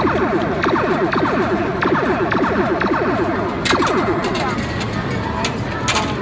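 Loud arcade din: electronic game sounds and music, with a dense run of quick falling electronic tones and scattered sharp clicks. One sharp clack stands out a little past halfway.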